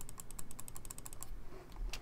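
A fast run of computer keyboard keypresses, about ten a second for just over a second, then a short pause and a couple more presses near the end: keys stepping through the moves of a game record.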